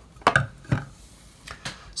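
A few light knocks and clicks of small electrical hardware, a dimmer switch and a porcelain lamp socket holding a ceramic heat emitter, being set down on a wooden desk. Most come in the first second, with one more near the end.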